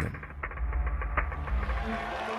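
Background music with held low notes over a deep, steady rumble.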